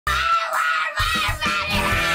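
A young girl screaming in a tantrum: several long, high-pitched screams. Background music with a beat comes in underneath about a second in.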